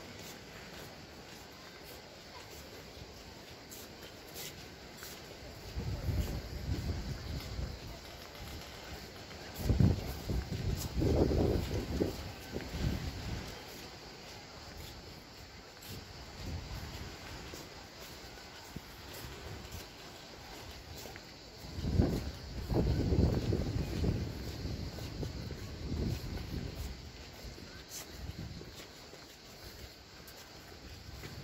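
Wind buffeting the microphone in gusts: a low rumble that rises suddenly about ten seconds in and again about twenty-two seconds in, over a faint steady outdoor background.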